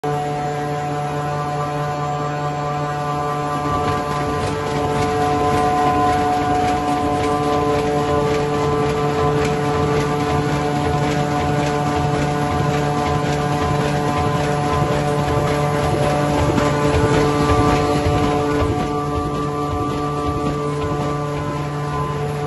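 Automatic four-colour flexo printer-slotter-rotary die-cutter for corrugated cartons running: a steady, many-toned machine hum with a dense, fast clatter over it, swelling slightly twice.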